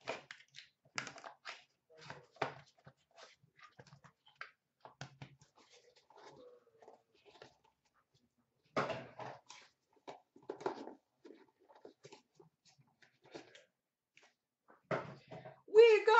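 Hands cutting open and unpacking a small cardboard box of trading cards: irregular crackles, scrapes and rustles of cardboard and packaging, with a pause of about a second near the middle and louder bursts of rustling about nine and eleven seconds in.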